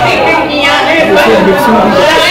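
Speech: a woman talking into a microphone, with other voices chattering over her.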